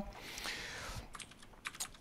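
A soft breathy hiss, then a quick run of light clicks from laptop keys being tapped.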